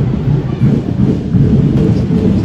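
Heavy street-parade drumming from a percussion band, a loud, rapid, driving low beat.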